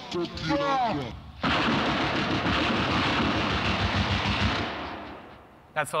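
Computer-generated jungle tune played live through Overtone: a sliding pitched line for about the first second, then, after a brief gap, a dense, fast drum pattern that fades out well before the end.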